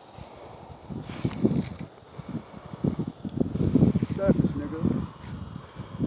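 Indistinct voices talking, with a few short sharp clicks scattered through.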